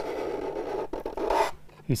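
Wood chisel used as a scraper, its edge scraping the lacquer finish off a kauri guitar top. One continuous scrape that stops about a second and a half in.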